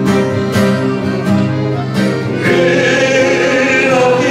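A man singing solo into a microphone over instrumental accompaniment, with held notes over a steady beat; the voice comes in stronger about two and a half seconds in.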